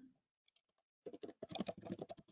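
Computer keyboard typing: quick, irregular keystrokes starting about a second in.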